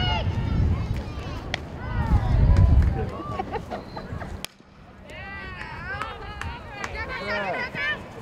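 Indistinct voices of softball players and spectators calling out across an outdoor field, with wind rumbling on the microphone. The sound drops off sharply about halfway through, then the calls pick up again.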